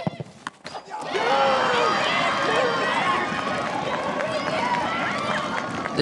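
A couple of sharp knocks in the first second, then many voices of football spectators cheering and shouting at once after a penalty kick.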